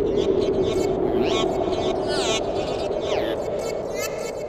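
Several people's voices overlapping in an indistinct hubbub, over a background layer of repeated falling high-pitched synthetic tones.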